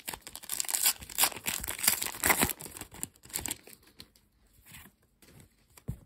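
A foil Match Attax trading-card booster pack being torn open and its wrapper crinkled for about the first three and a half seconds, then a few faint rustles of the cards being handled.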